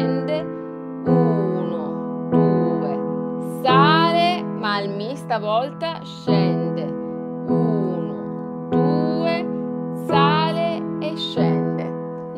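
Upright piano played slowly: a repeating figure of triplet notes, the third stepping up a note and back down, over sustained pedalled chords, with a new group struck about every second and a quarter. A woman's voice sings along softly over it.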